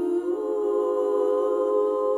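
Women's a cappella ensemble singing a sustained chord in close harmony without words; the chord shifts up shortly after the start and is then held steadily.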